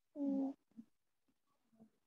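A child's voice reading aloud over a video call, one short drawn-out phrase, "says I", near the start; otherwise very quiet with a few faint sounds.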